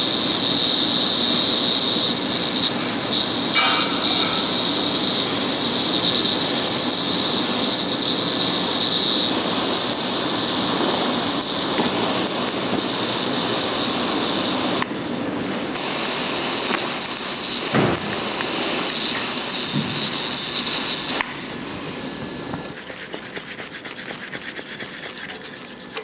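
TIG welding arc from a Withus MP-200S multi-process welder in argon mode, a steady hiss with a strong high buzz. It breaks off briefly about fifteen seconds in and stops about five seconds before the end. Near the end a wire brush scrubs the fresh weld bead in quick, regular strokes.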